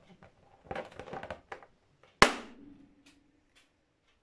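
A pink party balloon pressed down onto a single upturned thumbtack bursts with one sharp, loud pop a little over two seconds in, the tack's point piercing the rubber. It comes after about a second of hands rubbing on the stretched balloon.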